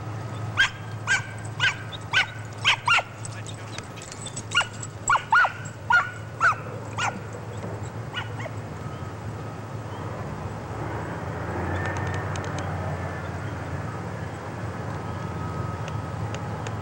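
A dog giving play barks: about a dozen short, sharp barks, roughly two a second, in two runs over the first seven seconds. After that only a steady low background noise remains.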